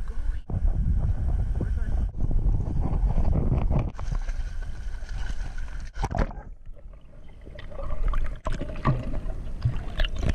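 Muffled sound through a waterproof camera housing: a low rumble of wind and handling noise on the housing for the first six seconds, then, after a sudden break, muffled water sloshing and bubbling as the camera dips into the shallow surf.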